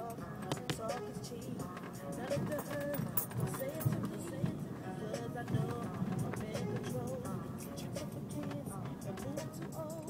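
Music with a singing voice playing inside a moving car's cabin, with frequent short clicks over it.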